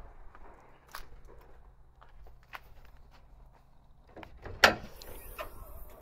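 Toyota FJ Cruiser's bonnet being opened by hand: a few light clicks as the catch is worked, then one sharp knock, the loudest sound, about four and a half seconds in as the bonnet is raised and propped.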